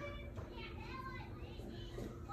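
Faint children's voices chattering in the background.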